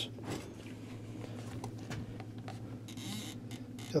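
Quiet room with a low steady hum, under faint rustling and small clicks of a handheld camera being moved, with a brief soft hiss a little after three seconds in.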